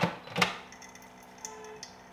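Two sharp knocks about half a second apart as a carafe is set into the dispensing slot of a countertop reverse osmosis water purifier, followed by a faint high hiss.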